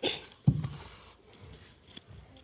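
An earthen pot scraping and knocking against a clay hearth as it is lifted out: a clatter at the start, a dull thump about half a second in, then softer rubbing. Glass bangles jingle briefly near the end.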